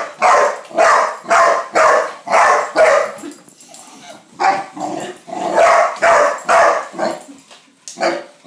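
Young dog barking repeatedly, about two barks a second, with a short pause about halfway through before the barking starts up again.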